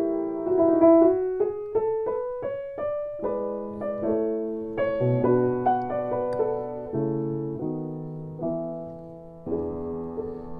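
Restored c.1892 Bechstein Model III 240 cm grand piano played slowly. A rising run of single notes comes in the first few seconds, then held chords with deep bass notes that ring on and fade, and a new chord near the end.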